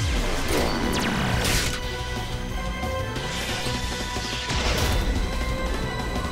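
Cartoon robot power-up sound effects over dramatic music: sharp metallic hits and whooshes with a falling swept tone in the first second or so, and another burst of hits near the end.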